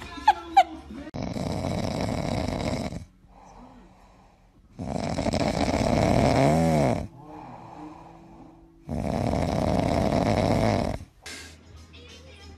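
A dog snoring loudly: three long snores of about two seconds each, with quieter breaths between them.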